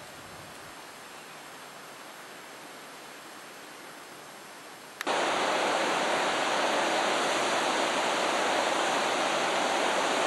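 Steady rushing of water at a hydroelectric dam. It is faint at first, then, after a sudden click about halfway through, much louder and fuller as the recording moves to the dam wall.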